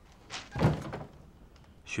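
A brief rustle, then a single dull thunk as exam papers are set down on a wooden desk.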